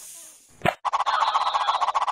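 Cartoon sound effect: after a short burst, a loud rapid fluttering buzz of many quick pulses starts about a second in and keeps going.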